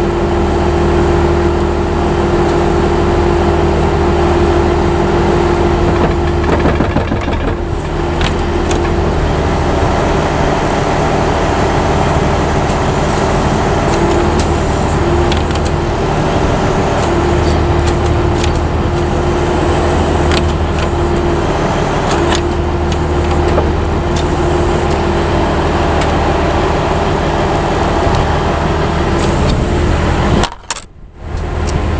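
A heavy Class C tow truck's engine idling steadily, a constant low drone with a steady hum.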